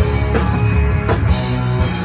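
Live rock band playing an instrumental passage: held electric guitar chords and bass over a steady drumbeat, with a drum hit about every three-quarters of a second.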